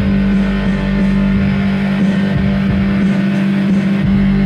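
Live music played on two electronic keyboards: notes played over a steady, held low note.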